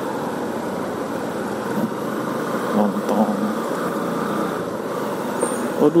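Motorcycle engine running at low, steady riding speed with road and wind noise, heard from the bike itself.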